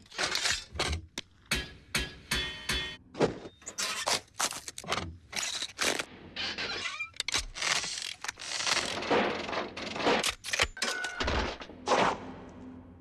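A rapid string of horror-film sound effects cut one after another: sharp hits, thuds, crashes and shattering, a new one every fraction of a second.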